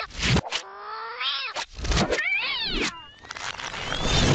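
A cartoon cat character's yowls and cries, broken by several sharp slapstick hit sound effects, with a wavering cry that swoops up and down a little past two seconds in.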